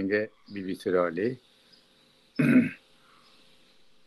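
A man clears his throat once, a short rough burst about two and a half seconds in, after a few spoken words.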